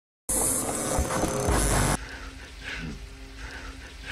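Film soundtrack audio: after a moment of dead silence, a loud rushing noise with a low rumble starts. About two seconds in it cuts off abruptly, leaving a quieter sustained drone with steady tones.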